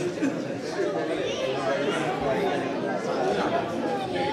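Indistinct chatter of many voices talking at once in a large hall.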